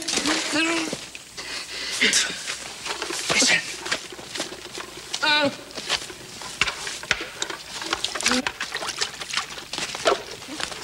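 A man's wordless cries and groans of pain after grabbing at his burning belongings with his hands, with a quavering wail about five seconds in. Scattered sharp crackles and knocks run between the cries.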